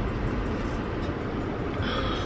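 Steady low rumble and hiss of a car's running engine, heard inside the cabin.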